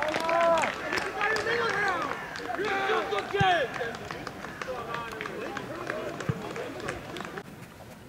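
Several voices shouting and calling out over each other in celebration of a goal, with a few scattered claps, dying down over the seconds.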